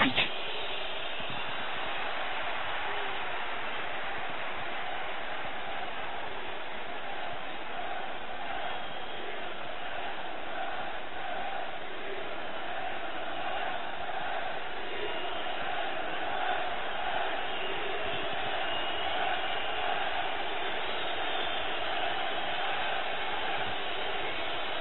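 Football stadium crowd: a steady din of thousands of voices, holding level throughout with no single sound standing out.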